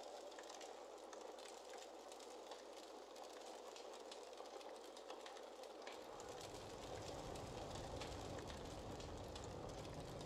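Faint steady hiss with scattered light crackles, and a low rumble that comes in suddenly about six seconds in.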